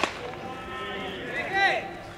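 A single sharp crack of a baseball impact at the start. About a second and a half later comes a short, loud shout from a player on the field.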